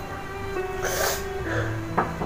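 Slow background music with held notes, over which a crying young woman gives a sharp, noisy sob about a second in and a softer one shortly after. A brief click comes right at the end.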